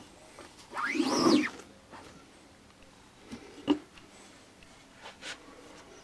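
Rubber squeegee pulled across an ink-loaded screen-printing mesh: one scraping stroke about a second in that rises and falls in pitch, followed by a few light knocks.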